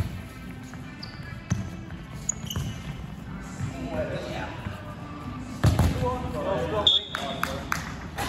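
A football being kicked and thudding on a wooden sports-hall floor, a few sharp thumps with the loudest about six seconds in, among short high sneaker squeaks and players calling out, all echoing in the hall.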